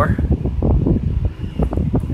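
Steady low rumble on the microphone, with a man's voice quieter and brief about half a second in.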